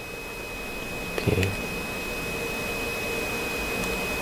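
Steady hiss with a faint constant high-pitched tone: the background line noise of a radio broadcast recording. A brief faint sound about a second in.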